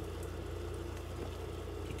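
A steady low mechanical hum, even and unchanging.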